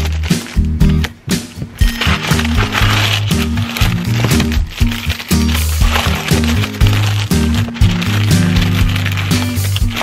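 Background music with a steady beat over a bass line that steps between notes.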